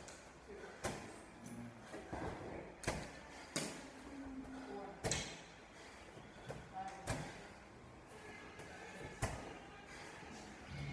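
A 20-pound medicine ball striking the wall target and being caught during wall-ball shots, a sharp thud about every two seconds.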